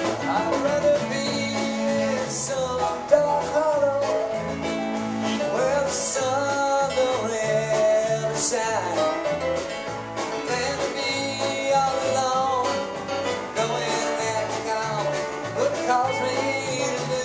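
Live band playing an instrumental break in a country-folk song on acoustic guitars, keyboard, bass and drum kit: a lead melody with bending notes over a stepping bass line, with a few cymbal splashes.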